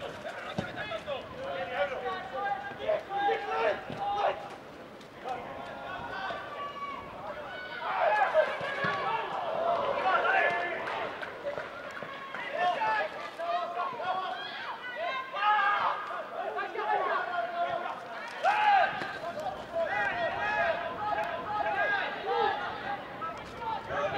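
Footballers shouting to each other on the pitch during play, several voices calling out over one another.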